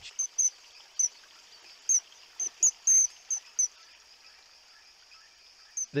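Common kingfisher calling: short, shrill, very high-pitched calls, irregularly spaced and bunched in the middle, over a faint steady high hiss.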